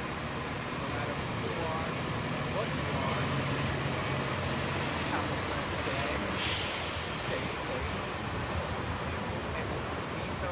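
New Flyer DE60LFR articulated diesel-electric hybrid bus running as it pulls away, with a short, sharp air-brake hiss about six and a half seconds in, over steady roadway traffic noise.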